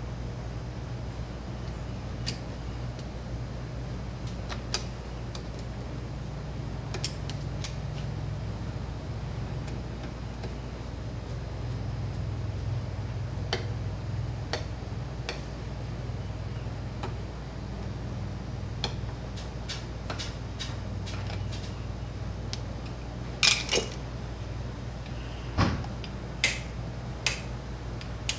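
Scattered light metallic clicks and clinks as a carburetor and its small parts are handled on a workbench, sparse at first and louder and busier in the last few seconds. A steady low hum runs underneath.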